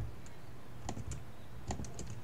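A few keystrokes on a computer keyboard, spaced out, with a small cluster about a second in and another near the end.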